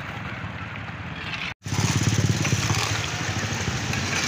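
Motor scooter engine running as it rides past close by through shallow water. The sound drops out for an instant about one and a half seconds in and comes back louder.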